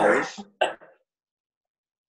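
A person clearing their throat in two short bursts within the first second.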